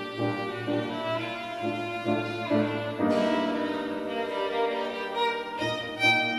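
Violin playing a melody with grand piano accompaniment.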